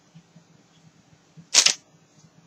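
A single short, sharp click about one and a half seconds in from a cardboard cigarette pack being handled and set down on a desk.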